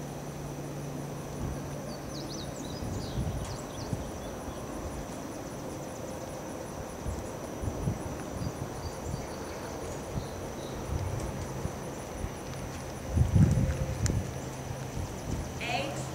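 Horse's hoofbeats landing softly on arena footing at the trot, a run of muffled low thuds, over a steady low hum. One louder thump comes about 13 seconds in.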